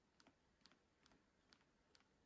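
Faint, short clicks, about five in two seconds at uneven spacing, as fingers squeeze and work a soft silicone snap-ring fidget toy.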